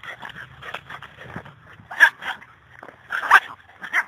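Two young dogs play-fighting in grass: scuffling with short dog vocalisations, the loudest about two seconds in and again just after three seconds.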